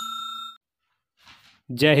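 A bell-like chime sound effect rings with several steady tones, fading out about half a second in. A man starts speaking near the end.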